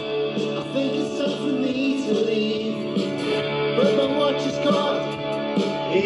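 A song with singing and guitar playing from a cassette through the built-in speakers of a Sharp GF-8080 stereo radio-cassette boombox. The tape deck is running on its newly replaced drive belt.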